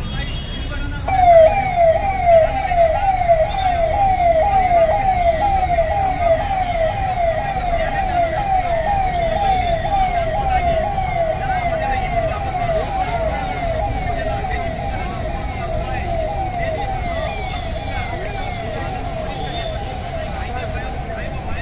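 Hand-held megaphone's siren: a fast falling wail repeating about twice a second, starting about a second in and loudest just after it starts, over crowd and traffic noise.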